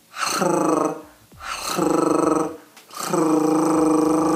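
A man's flutter tongue done with the voice alone: a rolled-R trill held on one steady pitch, three times over. The third trill is the longest.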